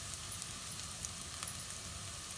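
Chopped onions frying in oil in a pot, a steady sizzle with a few faint crackles.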